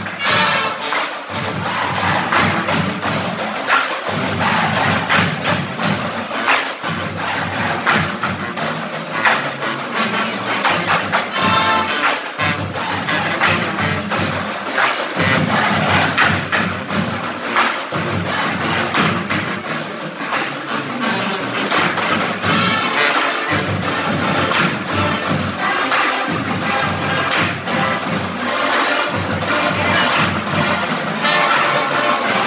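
Marching band playing live: brass and sousaphones over a steady, driving drumline beat.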